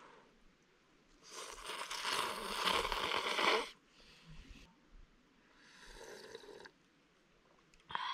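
A person slurping noodles: one long, loud slurp starting about a second in, then two shorter, quieter slurps of broth from the bowl.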